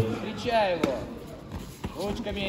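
Two sharp thumps about a second apart, near the middle and just before the end: a gloved fighter's strikes landing in a hand-to-hand combat bout. Shouting voices carry faintly across a large, echoing sports hall underneath.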